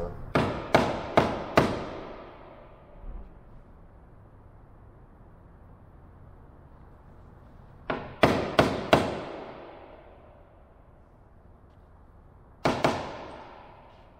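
Hammer tapping wooden wedges to shift the plywood fuselage box onto its centre line: four quick sharp taps, four more about eight seconds in, and another one or two near the end, each ringing out in a large echoing hall.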